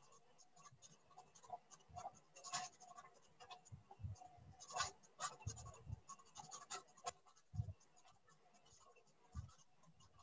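Faint, irregular clicks and scratchy crackles of a Zoom call's audio breaking up: the remote speaker's internet connection is failing, so her voice does not come through.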